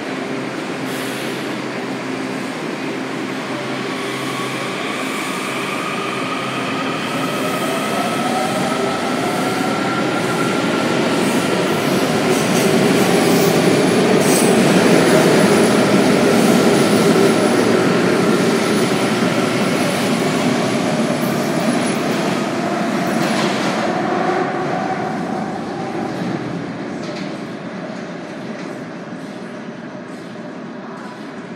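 WMATA Kawasaki 7000-series Metro train pulling out of an underground station. Its propulsion whine rises in pitch as it accelerates, over wheel and rail noise that is loudest about halfway through and then fades as the train leaves.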